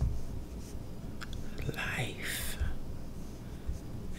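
A soft, breathy whisper about two seconds in, with a small tap just before it, over a low steady hum.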